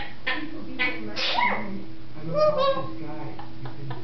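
African grey parrot vocalizing: a few short clicks, a gliding call a little after a second in, and a voice-like call around two and a half seconds in.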